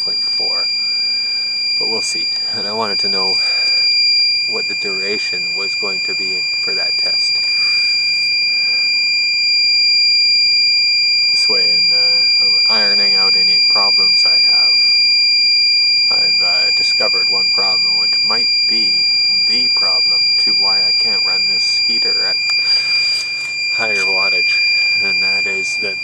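Iliminator 1750 W inverter's low-battery alarm sounding a continuous, steady high-pitched tone. The battery bank has sagged to 10.6 volts under a 400 W halogen heater load, close to the inverter's low-voltage cutout.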